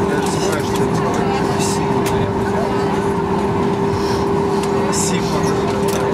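Cabin noise of a Boeing 737-8200 taxiing at low speed after landing: a steady drone from the idling CFM LEAP-1B engines and cabin air, with a constant hum running through it.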